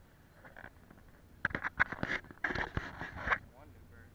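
About two seconds of indistinct voice sounds close by, in short choppy bursts starting about a second and a half in, with no words that can be made out.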